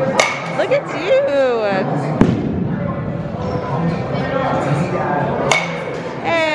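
A baseball bat strikes pitched balls in a batting cage: two sharp cracks with a short ring, one just after the start and one about five seconds later. A duller thud comes between them. People's voices and a general hall din run underneath.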